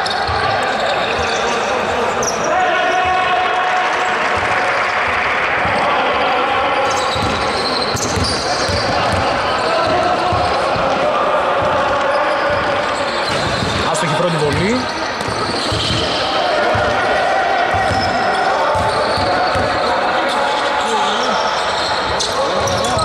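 A basketball bouncing on a wooden court during a free-throw routine, with indistinct voices throughout.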